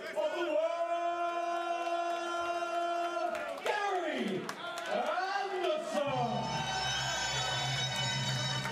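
A ring-announcer-style MC's voice calling out a darts player's name in a long, drawn-out, sung-out style, the first syllable held for about three seconds and the rest sliding up and down, over a crowd in a large hall. Walk-on music with a steady low bass note comes in about six seconds in.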